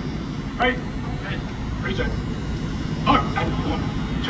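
Outdoor stadium crowd ambience: nearby spectators' voices in short, scattered snatches over a steady low rumble.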